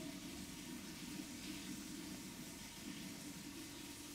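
Laboratory tap running steadily through a water-jet filter pump into the sink, the pump giving suction for vacuum filtration through a Buchner funnel and flask.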